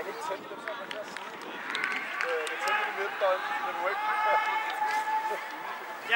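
Indistinct voices of several people talking and calling outdoors, with no words clearly made out.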